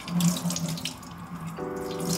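Water running from a kitchen faucet into a stainless steel sink, splashing over a hand being rinsed under it. A low steady hum sits underneath, joined by a higher steady chord about three-quarters of the way through.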